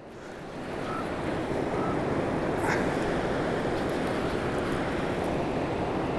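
Steady rushing of a big, fast river, with wind noise on the microphone.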